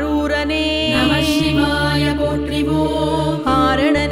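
Tamil devotional music for Shiva: a steady low drone under a melodic line, with a brief bright shimmer about a second in.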